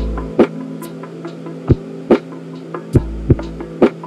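Lo-fi hip hop beat: a slow drum loop of kicks and snares over held, hazy chords, with a deep bass note at the start and again near the end.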